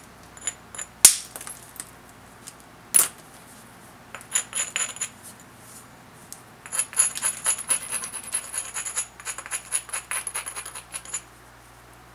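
A stone abrader rubbed along the edge of a banded obsidian knife preform, the usual grinding of the edge that prepares it for the next flake removals. Two sharp clicks come about one and three seconds in, then a quick run of gritty scraping ticks with a faint glassy ring from about seven to eleven seconds.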